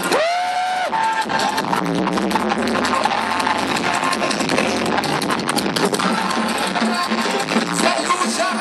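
Loud street-carnival music with dense, driving percussion, heard through a phone microphone amid a dancing crowd. Near the start, a long note rises and is held for about half a second over the beat.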